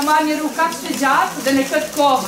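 Higher-pitched voices of a woman and children, in short overlapping phrases, over a steady hiss of crowd noise.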